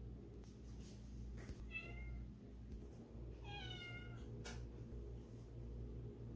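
A kitten meowing twice, each a high-pitched call that falls in pitch, the second longer; a sharp click follows shortly after the second meow.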